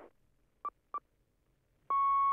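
Two short electronic beeps about a third of a second apart, then a longer, louder steady beep at the same pitch starting just before the end, in the manner of time-signal pips.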